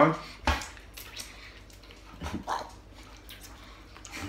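Two people chewing and sucking on either end of a red liquorice lace: a sharp lip smack about half a second in, a few small mouth noises, and a brief muffled hum through closed lips near the middle.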